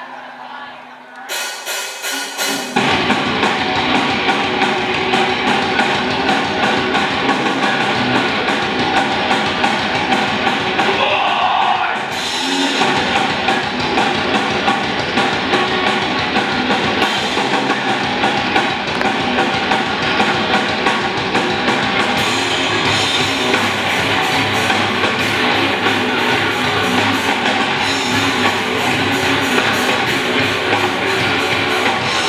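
Live heavy rock band playing on stage: electric guitars, bass and drum kit. After a quieter opening the full band comes in about three seconds in and plays on with a fast, driving beat, with a brief break near the middle.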